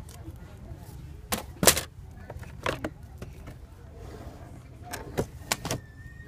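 Framed wall signs being handled on a store shelf: a run of sharp clacks and knocks of hard frames, the loudest a little under two seconds in, with a quick cluster of four near the end, over a steady low hum.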